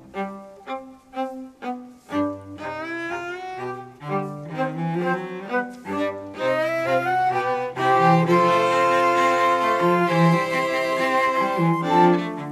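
Classical music for bowed strings with a cello prominent, accompanying the ballet. Short separated notes for the first couple of seconds give way to quicker running phrases, then longer held notes from about eight seconds in.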